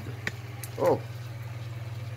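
Steady low hum with a rapid flutter in it, like room equipment running. A single light click comes about a quarter second in, then a spoken "Oh".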